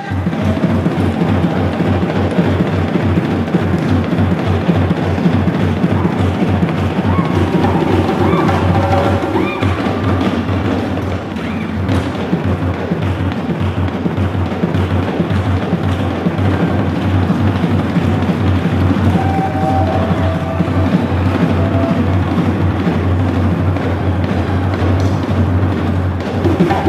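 West African drum ensemble, djembe hand drums over dunun bass drums including the dundunba, playing a dense, steady rhythm.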